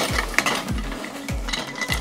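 Metal background-stand poles clinking and rattling as they are pulled out of a gear bag, over background music with a steady bass beat.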